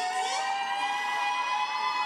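A woman's voice singing one long, high, held note whose pitch rises slowly, unaccompanied.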